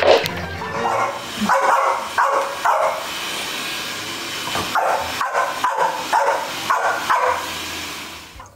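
Small dog barking in two runs of short barks, about two a second, over background music.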